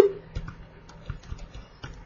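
Faint, irregular light clicks and taps from the device used to handwrite on a computer screen, made while writing numbers and an arrow.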